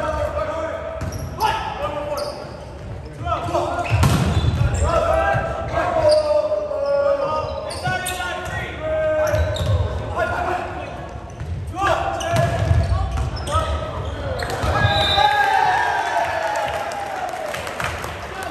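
Volleyball rally in a gym: the ball is served and repeatedly struck by hands and forearms, each hit a short slap, over players and spectators shouting and calling throughout.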